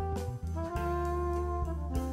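Background instrumental music in a jazz style: a melody of held notes over a sustained bass line.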